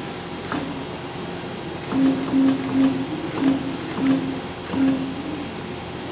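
Eagle CP60H profile bending machine giving a run of six short low hums about half a second apart, the drive jogged in brief pulses as the forming roll is moved down to tighten the bend on an angle strip, over a steady machine noise with a few faint clicks.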